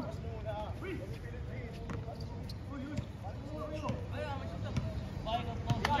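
Faint voices of players calling out on an outdoor basketball court over a steady low hum, with a few scattered sharp knocks.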